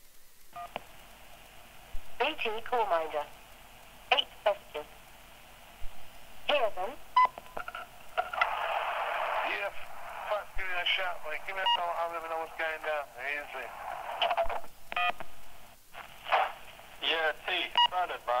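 Speech heard over a telephone line, thin and muffled, as on an answering-machine message, with a few short beeps among the words.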